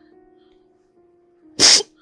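Soft background music with held notes, then, about one and a half seconds in, a single short, loud, sharp burst of breath from a crying person.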